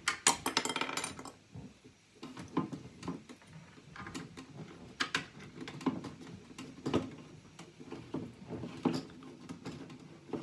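Small plastic Calico Critters dollhouse pieces clicking and knocking against each other and the tabletop as a plastic window part is pushed and fiddled at without fitting, with a louder rattle in the first second.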